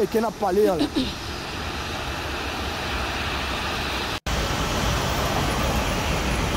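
Steady outdoor traffic noise, a low rumble with hiss, from roadside footage near the airport, with a brief cut-out about four seconds in.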